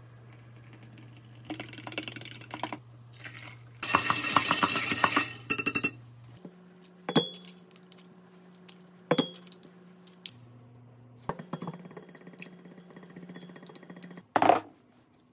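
Hot water poured from a gooseneck electric kettle into a drinking glass, loudest a few seconds in. Then a fork clinks against a glass measuring cup, first in single taps and then in quicker runs, as eggs are beaten in it.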